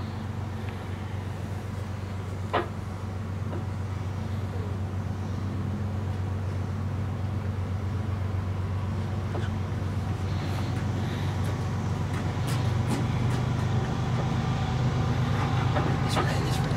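A steady, low engine drone that grows gradually louder, with a brief sharp sound about two and a half seconds in and faint scattered clicks near the end.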